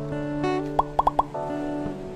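Intro jingle music with held plucked-string notes, broken by four quick rising pop sound effects about a second in.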